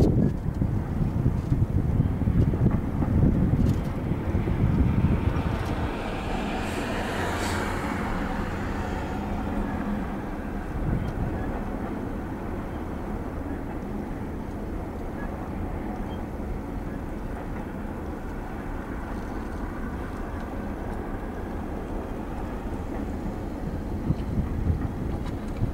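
Double-stack intermodal train's well cars rolling past, a steady rumble and clatter of wheels on rail. Wind buffets the microphone through the first five seconds, and a brief hiss swells and fades about seven seconds in.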